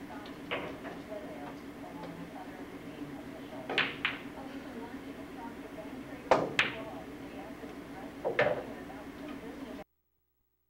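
Pool balls clicking on a billiard table: a sharp pair of clicks about two-thirds of the way through, typical of a cue tip striking the cue ball and the cue ball hitting an object ball, with single clicks before and after. A steady low hum runs underneath, and the sound cuts off just before the end.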